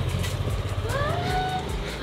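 A motor vehicle engine running steadily with a low hum, its pitch rising for about half a second partway through and then holding.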